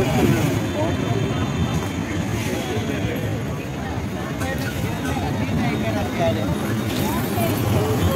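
Busy street ambience: people's voices talking around the camera over a steady low rumble of traffic and motorbike engines.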